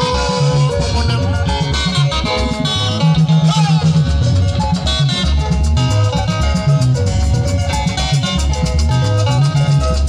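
Loud, upbeat dance-band music with plucked guitar lines over a steady bass and drum beat.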